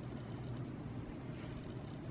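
Faint room tone: a steady low hum with a light hiss, and no distinct sound events.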